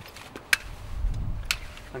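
Two sharp clicks about a second apart from the metal clamps of a set of jump leads being handled, over a low rumble.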